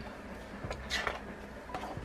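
Sheets of a scrapbook pattern-paper pad being turned over: a brief paper swish about a second in, with a couple of softer rustles around it.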